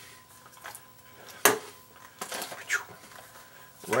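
A steel single-action revolver handled on a wooden table and slid into a leather holster: light clicks, one sharp metallic knock about a second and a half in, then brief scraping as the gun goes into the leather.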